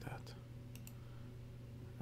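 Two faint, quick clicks a little under a second in, over a steady low hum.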